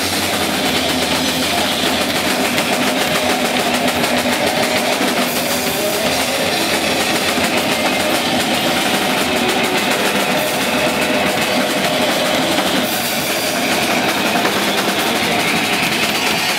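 Garage rock band playing live with no singing: heavily distorted electric guitar and bass over two drum kits, a dense, steady, loud wall of sound.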